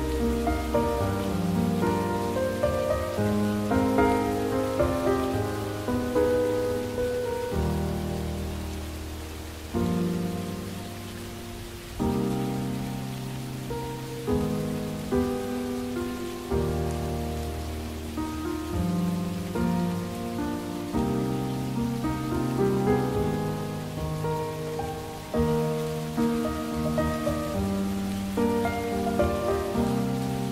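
Steady rain sound under slow music: sustained chords with a low bass note changing every few seconds.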